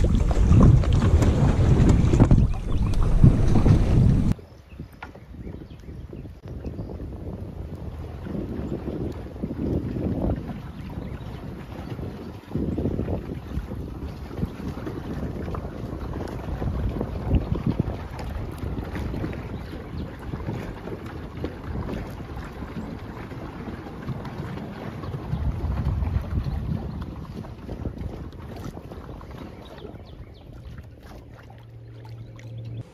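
Wind buffeting the microphone on an open lake, loud and rumbling for the first four seconds, then cutting abruptly to quieter, gusty wind noise that rises and falls for the rest.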